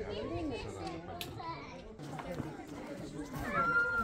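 Background voices of visitors, with children's voices among them, talking and calling with no clear words; a higher-pitched child's voice stands out near the end.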